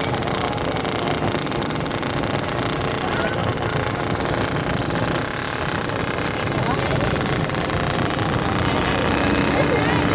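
Steady engine-like running from radio-controlled model fishing boats under way on the water, with people's voices faintly in the background.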